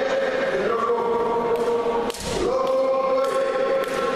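Choir singing in long held notes, briefly dropping out with a low thump about two seconds in, with a few faint clicks over it.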